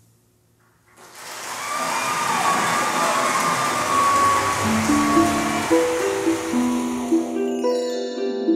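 Logo jingle. After a second of near silence, a swelling whooshing shimmer comes in, and about halfway through plucked, harp-like notes join in a stepping tune while the shimmer fades away.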